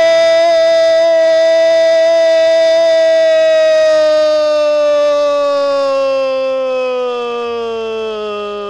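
Football commentator's long drawn-out "gooool" goal cry: one loud held vowel, steady in pitch for about four seconds, then slowly sinking in pitch as the breath runs out.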